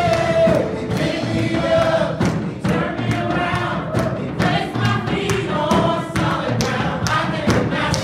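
Gospel worship music: a choir singing together over a band, with a steady drum beat.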